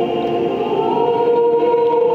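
Mixed choir of men's and women's voices singing in harmony, holding long sustained chords; a higher voice part comes in on a held note about a second in.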